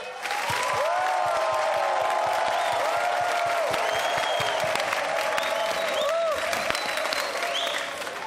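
Studio audience applauding and cheering, with whoops and a few high whistles. It begins right as the singing stops and dies down near the end.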